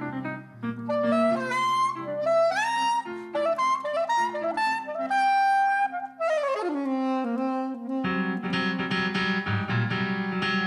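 Soprano saxophone playing a folk melody in a jazz style, with held notes and upward slides into the pitch, over an electric keyboard. The keyboard's low chords thin out near the start and come back in fully about eight seconds in.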